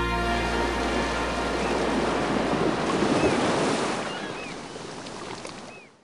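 Ocean surf washing steadily as the last sustained chord of a slow-rock song dies away in the first second. A few short, high chirps sound over the surf, and the whole fades out near the end.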